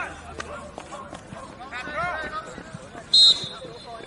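Players shouting across a football pitch, then a short, loud blast of a referee's whistle about three seconds in, the signal for the free kick to be taken.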